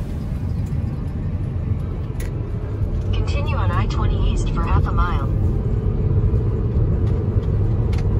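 Car interior road noise while driving on a highway: a steady low rumble of tyres and engine heard from inside the cabin.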